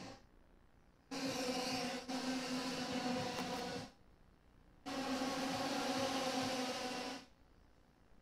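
IAME X30 125cc two-stroke racing kart engines running at high revs, heard faintly as a steady high drone in two stretches of about three seconds each, cut off abruptly with silence between.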